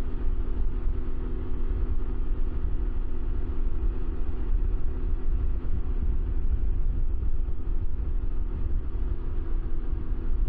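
Can-Am Ryker three-wheeler cruising at a steady speed: a constant deep wind rumble on the microphone over the steady drone of the engine, with no change in pace.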